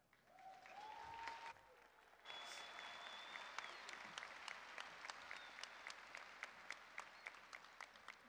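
Faint audience applause in a large arena, with two short whistles in the first few seconds. The clapping thins out to scattered single claps toward the end.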